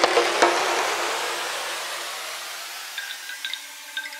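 Breakdown in a minimal tech-house track: with the kick and bass dropped out, a hissing noise wash slowly fades away. Near the end, sparse soft clicks and sustained synth tones come in.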